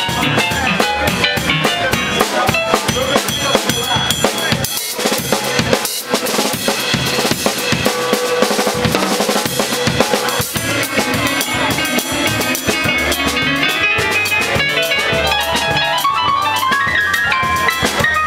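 Live Latin jazz from a small combo: an electronic keyboard playing lines over a drum kit with snare, rimshots, bass drum and cymbals. In the middle the drums and cymbals come to the fore, and the keyboard's notes stand out again near the end.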